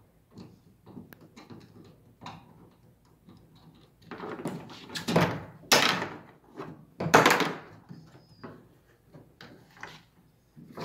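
A hand screwdriver driving a screw through a canopy-rail bracket into a plastic pedal-boat hull: light clicks, then several short scraping, creaking bursts between about four and seven and a half seconds in as the screw is turned.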